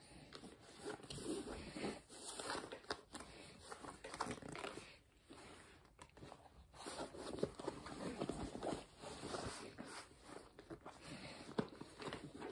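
Faint, irregular rustling with scattered light clicks and knocks: a bag's contents being rummaged through and handled.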